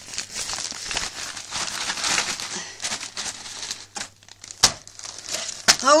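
Clear plastic bag crinkling and rustling against a paper mailing envelope as it is pulled out and handled, dense at first, then quieter with two sharp crackles near the end.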